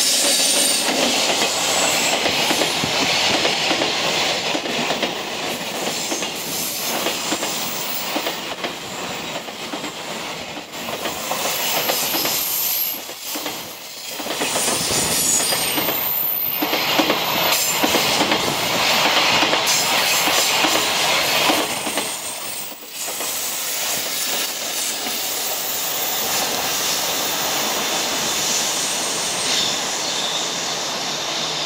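Electric container freight train passing close by on curved track: a loud, continuous rush of steel wheels on rail with clattering over the rail joints and high wheel squeal at times. The noise dips briefly twice.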